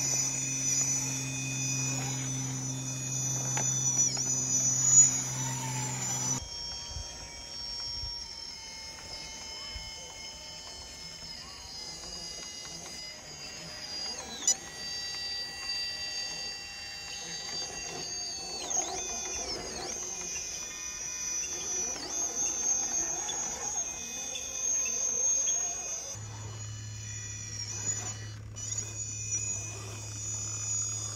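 Electric motors and gear drivetrains of radio-controlled low-CG rock crawlers whining at high pitch as they creep over rock, the pitch shifting a little with the throttle. A single sharp knock about fourteen and a half seconds in.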